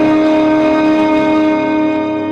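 Orchestral film score holding one sustained chord steadily.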